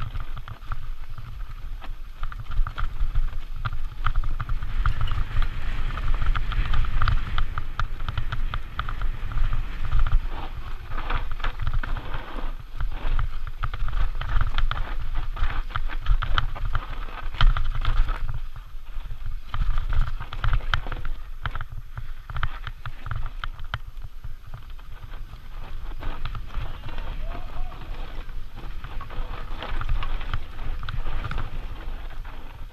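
Santa Cruz Nomad mountain bike running down a dry, rocky dirt singletrack: tyres crunching over dirt and loose stones, with irregular clattering and rattling from the bike and a steady low wind rumble on the microphone. The clatter is busiest in the first half and eases off after the middle.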